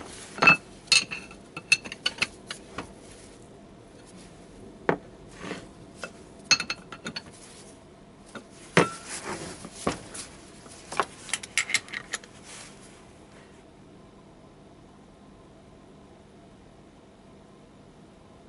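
Toyota AE86 differential parts (ring gear, carrier and housing) being handled and shifted on a workbench: scattered metal clinks and knocks in clusters over the first dozen seconds, then quiet apart from a faint steady hum.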